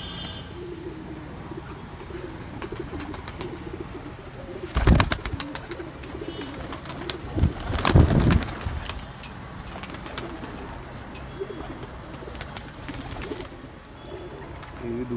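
A flock of domestic pigeons cooing in a loft, a continuous low warbling. Twice, about five and eight seconds in, a loud flurry of wing beats as pigeons flap close by.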